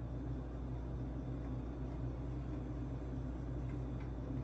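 Steady low mechanical hum with a faint hiss, the background of a kitchen with something running.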